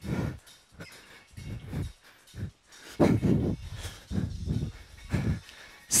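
A man breathing hard after exertion, with short, uneven huffs and exhalations close to the microphone about every second.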